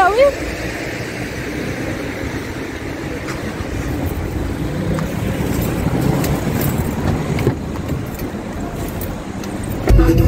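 Steady city street traffic noise with a low rumble, swelling for a few seconds in the middle and easing off again.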